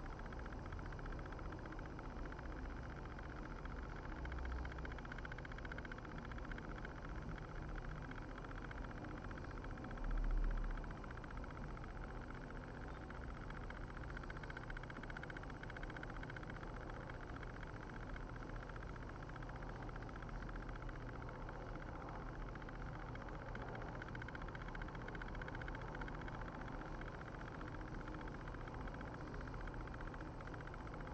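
Quiet, steady room noise from an open microphone, a low hum under a faint hiss, with one brief low thump about ten seconds in.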